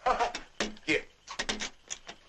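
Short, broken bursts of men's voices, brief exclamations and murmurs, with a few sharp clicks among them.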